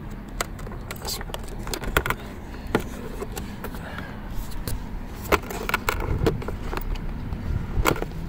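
Irregular sharp plastic clicks and knocks as the CVT intake air filter is worked loose from its plastic housing on a Can-Am Ryker, over a low steady background rumble.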